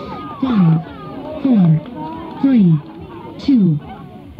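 Lead-in clip of a random-dance mix playing over a loudspeaker: a loud low tone sliding down in pitch, four times about a second apart, with crowd voices underneath.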